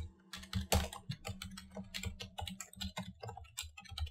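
Typing on a computer keyboard: a fast, continuous run of key clicks as a line of text is entered.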